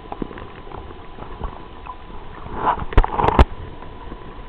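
Muffled water noise heard through an underwater camera held in a trout stream, with a brief gurgle and then two sharp knocks about three seconds in as the camera is bumped.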